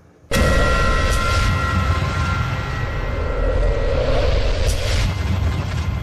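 Loud, deep, rushing sound effect that cuts in suddenly just after the start, holds steady with a few faint tones running through it, and fades away near the end.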